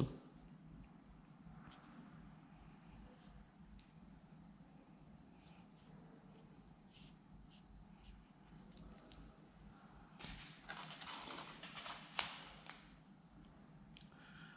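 Quiet rustling and small clicks of florist's tape being stretched and wound around a wire flower stem by hand, a little louder and busier about ten seconds in, with one sharper tick near the end.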